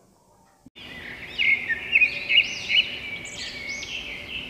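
Birds chirping: repeated high, rising-and-falling calls over a steady high-pitched background. They start about a second in, after a moment of near silence.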